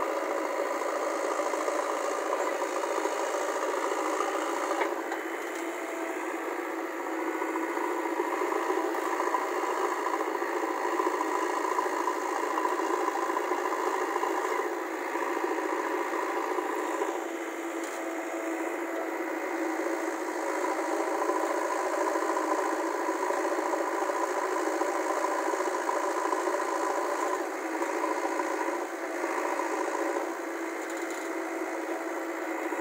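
JCB 3DX backhoe loader's diesel engine running steadily under working load while its hydraulic arm digs and loads soil, with the level easing off briefly a few times.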